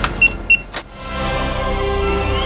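Electronic keycard door lock beeping twice, short and high, about a third of a second apart, followed by a single click of the lock.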